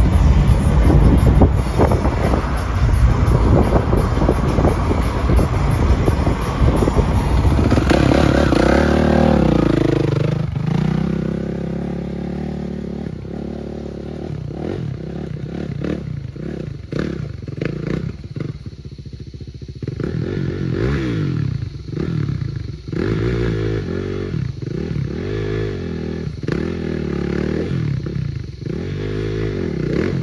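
Vehicle road noise, as heard inside a moving cab, for about the first ten seconds, then a dirt bike engine revving up and down over and over, its pitch rising and falling every second or two.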